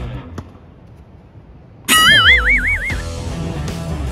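Background music drops away, leaving a quiet moment with one sharp click, then a cartoon boing sound effect bursts in about two seconds in, its pitch wobbling up and down about five times over a second before music resumes.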